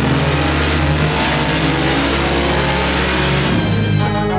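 Mercedes-AMG GT R's twin-turbo V8 running hard on a chassis dynamometer, with background music laid over it. The engine noise drops away near the end, leaving the music.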